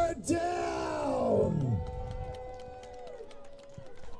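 Football spectators yelling and whooping: one long yell that falls in pitch, then held, steady calls that fade out after about three seconds.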